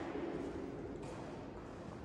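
Faint, indistinct voices over steady background noise, with no distinct event standing out.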